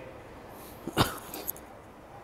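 A short, sharp animal call, a single yip, about a second in, with a fainter click half a second later over quiet room tone.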